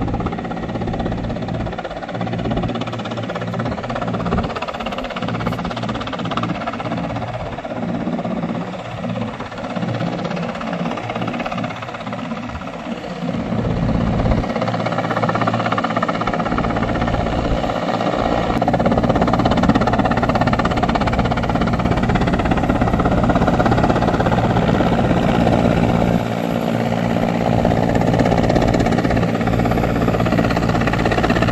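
Large military transport helicopter running with its rotor and turbine engines as it approaches low over a runway, a steady, loud rotor and engine noise that grows louder about halfway through as it comes nearer.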